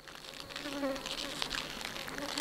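Insects buzzing: a wavering buzz over a dense, high hiss, fading in over the first half second.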